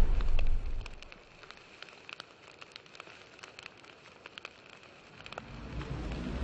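Fire sound effect: a low rush of flame that dies away within the first second, then scattered crackles and pops, with a low rumble swelling again near the end.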